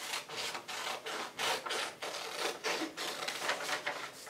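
Scissors snipping through a paper worksheet: a quick, irregular series of cuts, about three a second.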